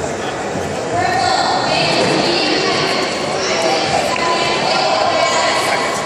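Raised voices, several people shouting at once, overlapping and echoing in a large hall; they grow louder about a second in.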